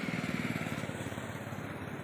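Motorcycle engine running steadily with an even, rapid pulsing beat.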